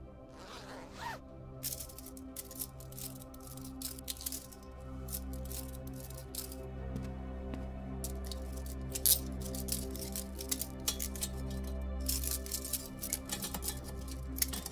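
Soft background music with a steady low drone, over which a first-aid bag is zipped open and its supplies handled: a short swish at the start, then many small rustles, clicks and crinkles of packaging.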